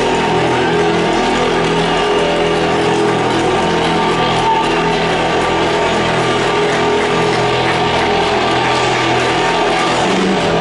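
A rock band playing loud, steady music led by electric guitar.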